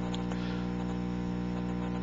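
Steady electrical hum with a buzzy edge, one unchanging drone of many stacked tones, like mains hum on the broadcast audio line.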